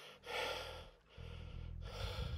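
A man breathing hard, with a heavy exhale about half a second in and another near the end: he is out of breath from climbing a steep rock scramble.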